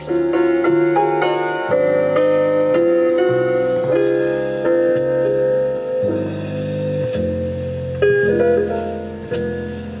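Pre-recorded keyboard music played back from cassette on a Marantz PMD-221 portable mono cassette recorder: piano-like chords with one long held note over changing bass notes, the harmony shifting about eight seconds in.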